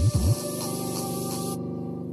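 Bass test track played at full volume through a JBL Charge 3 Bluetooth speaker: sustained low tones, with two quick bass sweeps that dive and climb again right at the start. A high hiss over the track cuts off suddenly about one and a half seconds in.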